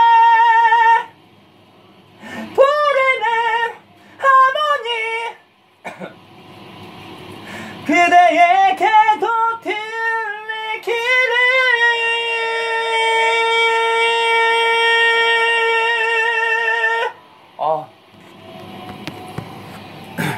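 A solo singer practising a high ballad passage: a held high note, short sliding phrases, a run of wavering notes, then one long held high note of about five seconds that stops abruptly. The singing is strained and not clean, which the singer blames on tiredness and weak abdominal support.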